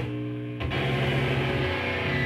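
Live rock band with distorted electric guitars through amplifiers in a small room: a held chord rings, then about half a second in a sharp hit and the band comes in with fast, dense playing.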